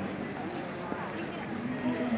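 Footsteps on hard marble steps as the person filming climbs, with indistinct voices of people talking in the background.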